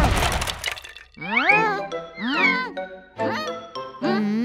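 Cartoon sound effects: the noisy crunch of a wooden pencil snapping in two dies away during the first second, then come three short phrases of sliding pitched tones in a playful cartoon score.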